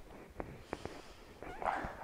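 A few faint clicks in the first second, then near the end a short vocal sound with a sliding pitch from a person being stretched, their leg pressed toward the chest.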